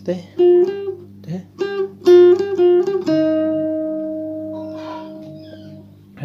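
Guitar playing a slow lead phrase note by note, with slides between some notes. About halfway through it settles on one long held note that rings and fades slowly.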